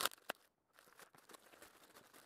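Faint crinkling of a plastic mailer bag being torn open and handled: a short rustle right at the start and another about a third of a second in, then only soft scattered rustles.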